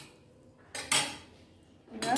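Clatter of metal kitchen utensils against cookware: one sharp clink about three-quarters of a second in, and another starting near the end.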